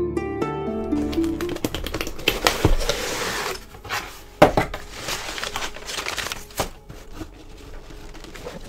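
A short jingle ends about a second and a half in. Then tissue paper rustles and crinkles as it is pulled back inside a cardboard box, with a few light knocks, the sharpest about halfway through.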